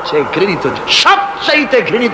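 A man's voice preaching in a sermon, rising and falling in pitch; only speech is heard.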